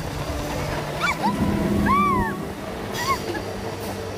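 Amusement-ride passengers giving three short high squeals, each rising then falling in pitch, the loudest about two seconds in, over a steady low hum.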